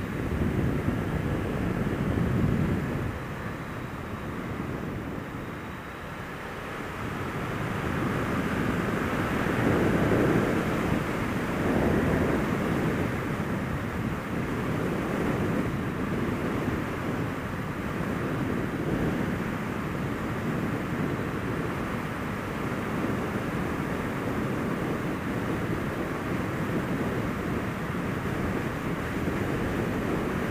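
Suzuki SFV650 Gladius's V-twin engine running at road speed, mixed with wind rush on the microphone; it swells louder and eases off a few times.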